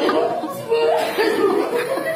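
People laughing and crying at once, with short emotional voice sounds mixed with speech.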